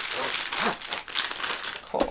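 Plastic packaging crinkling and rustling in irregular bursts as a rolled diamond painting canvas is put back into its plastic sleeve.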